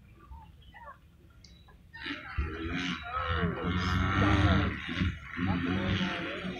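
Racing motorcycles revving hard as a pack accelerates and shifts through the turns. They get loud about two seconds in, and several overlapping engine notes rise and fall in pitch.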